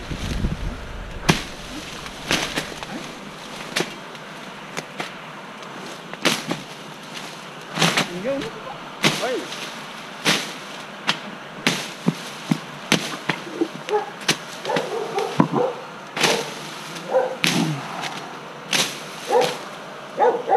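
Dense vines and brush snapping in sharp, irregular cracks, roughly one a second, as someone works through thick undergrowth.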